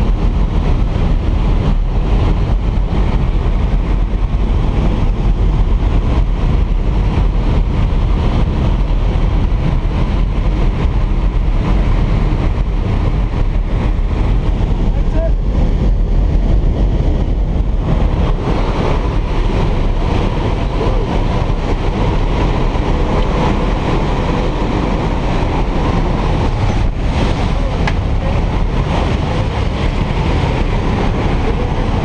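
Loud, steady aircraft engine and rushing-air noise inside a skydiving plane's cabin. From about halfway through it grows brighter and hissier, with the jump door standing open by the end.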